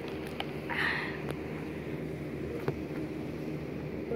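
Steady low background hum, with a brief breathy rustle about a second in and a few faint clicks.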